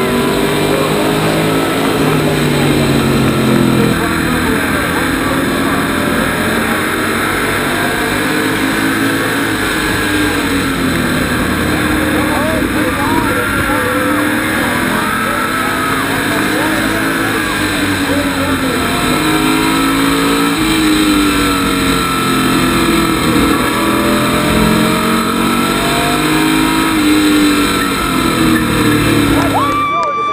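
SK Modified race car V8 engine heard through an in-car camera at racing speed, its pitch rising and falling every few seconds as the driver gets on and off the throttle around the short oval.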